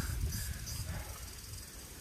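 Wind rumbling on the microphone with a faint, steady high hiss, easing off a little toward the end.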